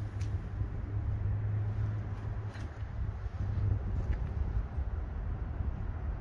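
Outdoor ambience dominated by a steady low rumble, a little louder in the first few seconds, with a few faint ticks.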